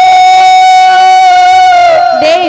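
Devotional kirtan music: an accompanying instrument holds one long, steady note, which fades near the end.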